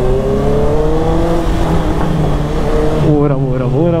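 Honda sport motorcycle's engine pulling under acceleration, its note rising steadily for about the first second and a half, then running on with road noise. A man's voice comes in near the end.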